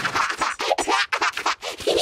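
A cartoon character's sung line run through a digital audio effect, chopped into rapid stuttering fragments. It comes out as glitchy electronic music with many clicks and short pitched blips.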